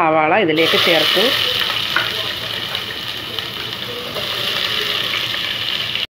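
Sliced red onions dropped into hot oil in a nonstick pan, sizzling loudly at once about half a second in. The sizzle eases slowly over the next few seconds as the oil cools under the onions.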